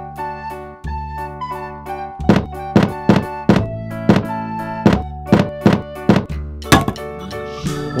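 A row of wooden domino bricks toppling one into the next: a run of about a dozen knocks, roughly three a second, starting about two seconds in and ending about seven seconds in, over light children's background music.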